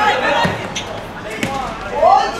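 Football kicked on a hard court: two dull thuds about a second apart, among players' shouts.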